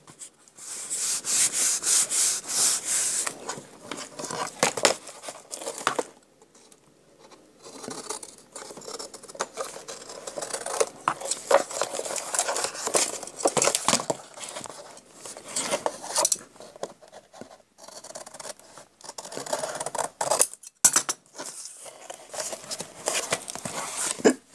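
Hands rubbing and smoothing freshly glued paper flat, a dry swishing at the start. After a quieter stretch come intermittent paper rustling and small clicks and knocks as the ring binder is handled.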